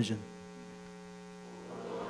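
Steady electrical mains hum after the last spoken word ends. Near the end, a faint sound of many voices begins to rise as the congregation starts reading together.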